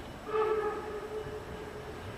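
Narrow-gauge steam locomotive's whistle sounding one blast of about a second and a half, loudest at the start and then trailing off.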